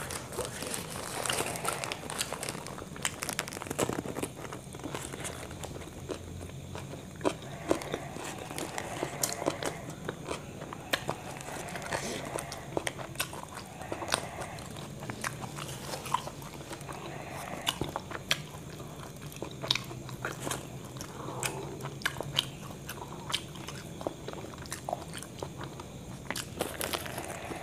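Close-up eating: a man biting into and chewing a soft burger with lettuce and cucumber, with irregular wet mouth clicks throughout.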